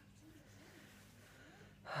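Quiet room tone, then near the end a woman starts a breathy sigh, an exhale that comes in suddenly and much louder.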